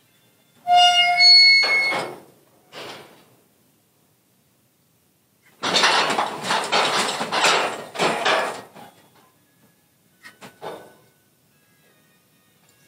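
Steel cattle chute and gates: a brief high metal squeal about a second in, then a few seconds of loud metal rattling and clanging around the middle as the equipment is worked.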